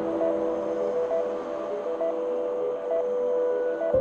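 Slow ambient background music: held notes, with short higher notes coming in about once a second, and a new chord near the end.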